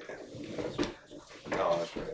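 Quiet conversational speech: voices talking low, loudest in the second half.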